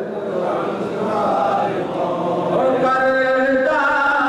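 A man's voice sings a Punjabi naat, a devotional poem in praise of the Prophet Muhammad, without instruments, in a chant-like melody. The notes are held longer in the second half.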